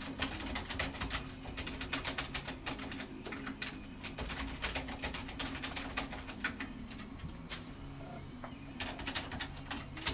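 Typing on a computer keyboard in quick runs of keystrokes, with a pause of about a second near the end before the typing starts again. A steady low hum runs underneath.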